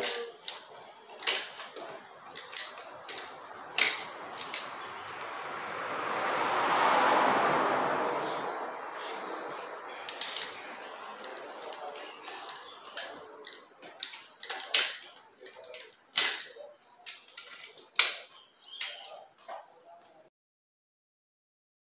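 Irregular metallic clinks and taps of a wrench working on a bicycle suspension fork's fittings. A soft rushing sound swells and fades around the middle.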